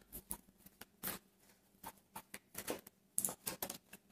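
A deck of tarot cards being shuffled by hand: a run of faint, irregular soft clicks and flicks from the cards, thickening near the end.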